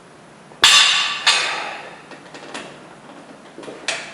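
A barbell loaded with weight plates set down on the gym floor, landing with two loud metallic clanks in quick succession about half a second apart, each ringing out, then a few lighter knocks as it settles.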